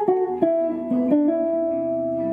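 Electric guitar playing a tune's melody plainly, note by note, as the starting point for paraphrasing around it. A few single notes change about every half second, then a note rings on over a lower one in the second half.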